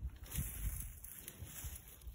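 Footsteps of a person walking downhill through brush and weeds, with low thumps about twice a second and a faint rustle of plants.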